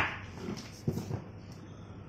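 A dog barking once, loudly and suddenly at the start, followed by a few softer short sounds.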